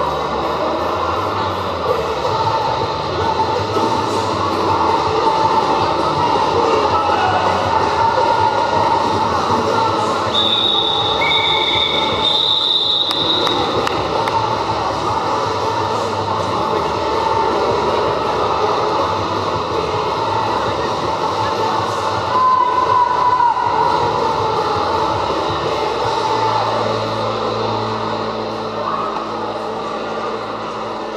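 Steady rumble of roller skate wheels on a sports hall floor under loud hall noise. Several short referee whistle blasts come about ten to thirteen seconds in.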